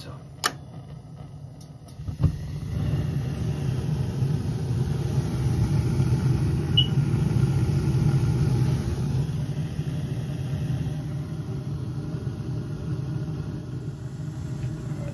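Atmospheric gas burners of a Williamson GWA-75 boiler lighting with a sharp click about two seconds in, then a steady low burner rumble that swells over the next several seconds as the boiler fires.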